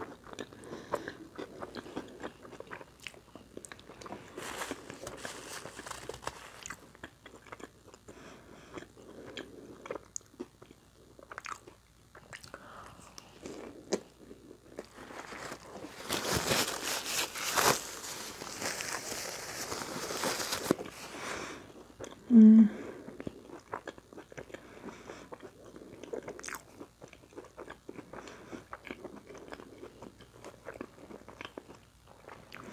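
A person eating a crispy fried taco shell close to the microphone: biting and chewing with scattered crunches. From about sixteen to twenty-one seconds in, a stretch of paper rustling, followed by a short loud vocal sound, the loudest moment.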